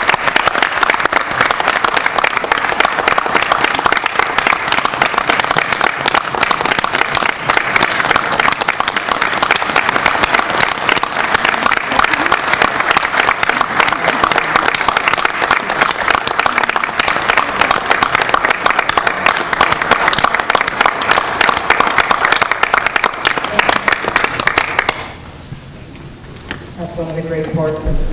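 A crowd applauding: a long, steady round of clapping from many hands that dies away about a second before the end.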